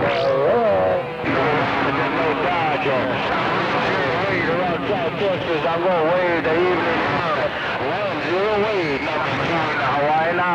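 CB radio on channel 28 receiving strong long-distance skip signals: several voices overlap into garbled chatter, with a steady whistle from clashing carriers underneath that drops lower about a second in and fades out near the end.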